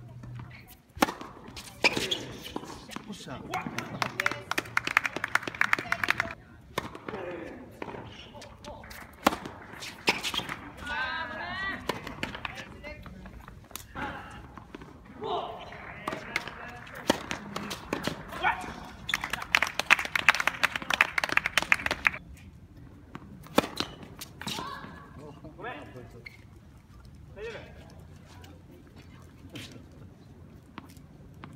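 Tennis balls struck by rackets during doubles rallies: sharp, separate pops, the first loud one about a second in, mixed with voices and shouts from players and onlookers.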